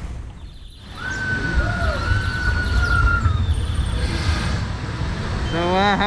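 Outdoor theme-park ambience by the log flume's splash pool: a steady low rush of water and air, with one long, high, level tone from about a second in that lasts a little over two seconds. A man's voice begins near the end.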